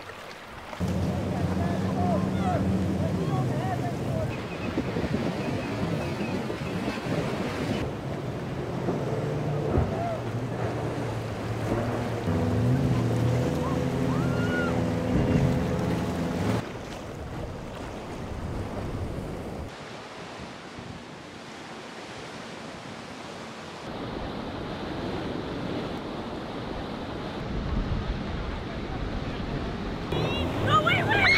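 Short clips of powerboats and motor yachts running through rough inlet water, one after another. Boat engines drone under the rush and crash of waves and spray against the hulls, with wind buffeting the microphone. The mix changes abruptly at each cut.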